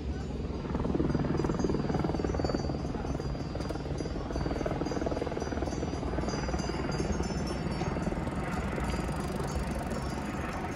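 A steady engine drone with a fast pulsing beat, getting louder about a second in and holding.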